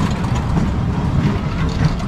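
Berg- und Talbahn (undulating roundabout) running as the ride gets under way, a steady low rumble of the gondolas and drive.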